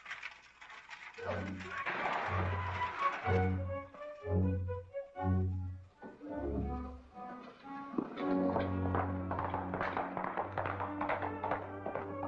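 Orchestral background score: a run of short, repeated low notes about once a second, then held low notes with higher parts above from about eight seconds in.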